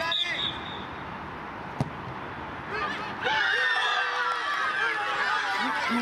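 Young voices shouting on a football pitch, with one sharp knock of a football being kicked about two seconds in; about a second later many high voices shout together and keep going.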